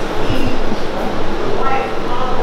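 Many people praying aloud at the same time: a loud, continuous jumble of overlapping voices in which no single speaker stands out.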